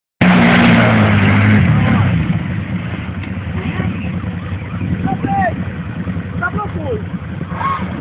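ATV engine revving hard as the quad ploughs through deep muddy water, with the rush of water spray, for about the first two seconds; the revs then drop and the engine runs lower while the quad sits stuck in the mud against the bank.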